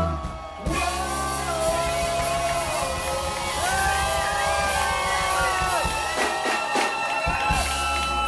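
Live reggae-rock band playing loud through a PA: electric guitars, bass and drums under long held melody lines, with singing. The music breaks off briefly about half a second in, then comes straight back.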